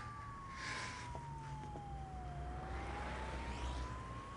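A single-tone emergency-vehicle siren wailing slowly, falling in pitch for about two seconds and then rising again, over faint background hiss.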